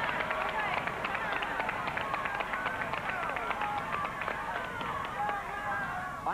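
The Wheel of Fortune prize wheel spinning, its pointer flapper clicking rapidly against the pegs around the rim, with studio audience voices calling out over it.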